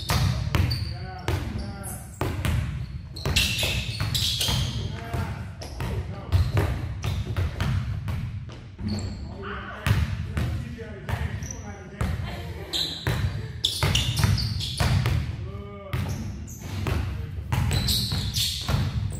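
Several basketballs being dribbled at once on a hard gym floor: a quick, irregular, overlapping run of bounces.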